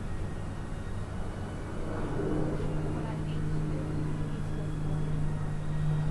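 A steady low mechanical hum; about two seconds in, a steadier low drone joins it.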